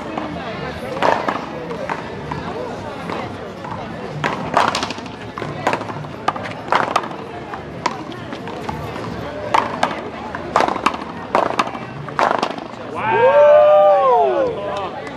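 Paddleball rally: sharp cracks of paddles striking the rubber ball and the ball hitting the wall, about a dozen irregular hits. Near the end comes a loud, drawn-out shout that rises and then falls in pitch.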